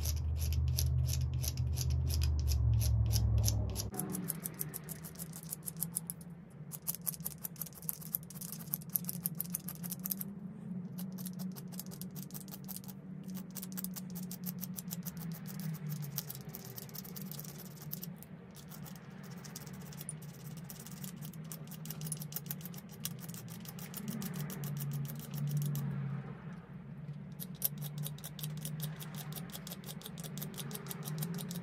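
Flint flake scraping along the tip of an antler pressure flaker, shaving it down to a narrower blunt tip: a fast, continuous run of small scraping strokes.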